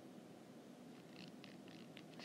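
Near silence: faint room hiss, with a few soft stylus strokes on a tablet screen a little past a second in.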